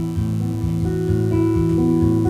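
Steel-string acoustic guitar played solo, a steady chord pattern with the notes ringing over one another.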